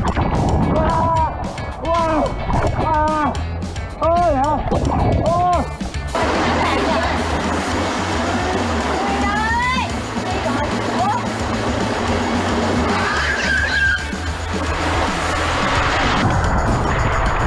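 A person crying out again and again over background music. From about six seconds in, a steady rush of water running down a tube water slide comes in under the music, with a few short rising cries.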